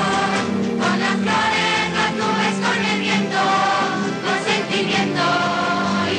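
A choir singing a song over instrumental accompaniment.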